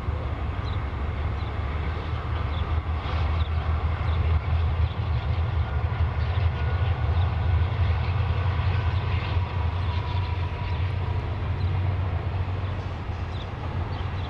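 Diesel locomotives of a double-stack freight train passing under power, a deep steady engine rumble that grows louder in the middle and eases off as the container cars roll by.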